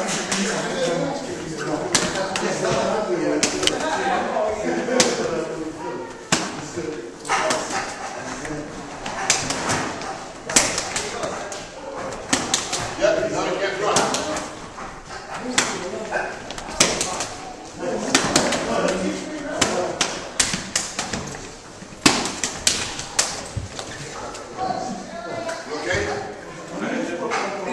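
Hand strikes and blocks in a Wing Chun Biu Jee drill: many sharp slaps of bare hands against fingerless MMA gloves and forearms, in quick irregular bursts with a few louder smacks. Men's voices talk and laugh between the exchanges.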